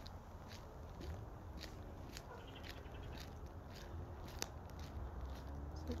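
Faint footsteps at a walking pace, about two a second, over a low steady rumble of wind on the microphone.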